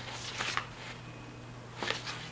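Planner sticker sheets and paper being handled, rustling in a few short bursts: a cluster about half a second in and another near the end.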